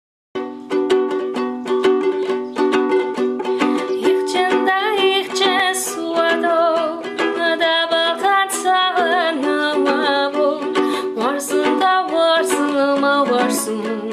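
Ukulele strummed as a steady chordal accompaniment, starting a moment in. A woman's voice joins about four and a half seconds in, singing a wavering melody over it.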